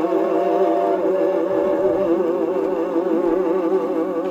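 A 1949 Mercury 78 rpm record of big-band vocal music playing through an acoustic phonograph's gooseneck tonearm and sound box. Long-held closing notes waver with heavy vibrato, starting to fade near the end.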